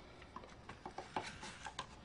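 Faint, scattered light clicks and taps of a plastic tub of gold embossing powder being handled and opened.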